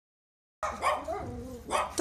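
Dogs barking and yelping, starting about half a second in.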